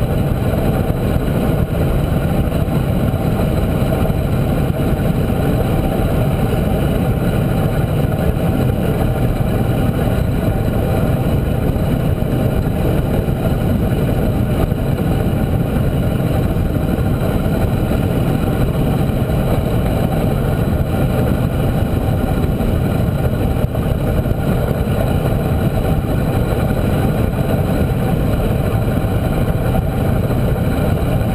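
Steady wind rumble buffeting a handlebar-mounted action camera's microphone on a bicycle descending at close to 50 mph, with tyre road noise mixed in. It stays loud and unbroken throughout.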